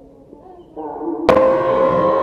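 Background music of sustained drone-like tones, swelling back in just before the middle. About a second and a quarter in comes a single sharp crack: an air rifle fired once at a small bird.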